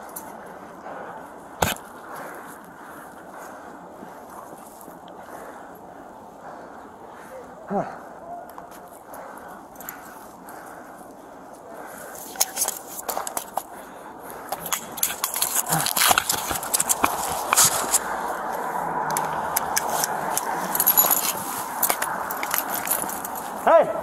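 Steady background noise picked up by a body-worn camera's microphone, with a sharp knock about two seconds in. From about halfway on come frequent clicks and rustling of clothing and gear as the wearer shifts and moves.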